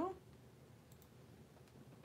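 One faint computer click about a second in, against quiet room tone, as someone works a computer at a desk; the tail of a hummed 'do' ends right at the start.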